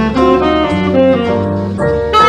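Saxophone improvising a fast bebop-scale line over a jazz blues accompaniment with a low bass line, the notes changing several times a second.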